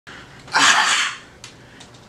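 A man's single sharp, breathy burst of air through the mouth, about half a second long, starting about half a second in.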